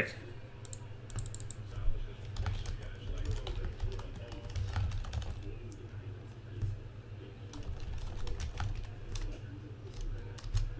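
Computer keyboard being typed on: irregular clusters of short key clicks, over a low steady hum.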